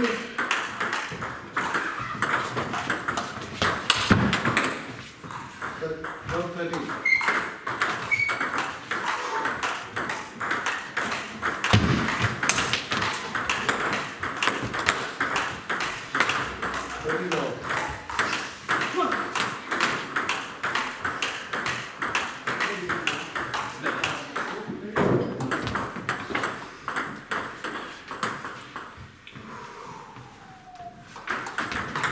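Table tennis balls clicking off bats and tables in quick, irregular succession, from rallies at several tables at once, with indistinct voices in the background.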